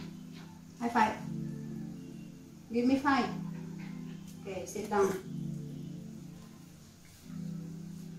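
Background music playing throughout, with three short barks from a poodle about one, three and five seconds in.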